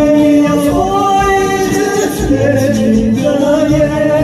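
A man singing into a handheld microphone over a karaoke backing track, holding long notes that glide between pitches.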